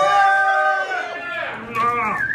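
A man's long held whoop at one steady pitch, lasting until about a second in, then other voices shouting as the eating starts.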